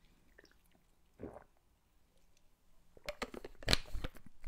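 A swallow of water, then a plastic water bottle being handled, crackling and clicking in the hand, loudest near the end.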